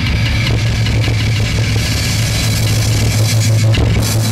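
Live grindcore band playing loud: heavily distorted guitar and bass hold a low droning chord over fast, dense drumming.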